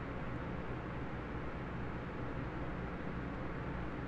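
Steady low hum with a soft hiss over it, unchanging throughout: background room and microphone noise.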